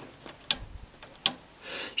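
Two sharp clicks about three-quarters of a second apart, with a fainter one at the start, from a knob or switch being turned on an oscilloscope's front panel.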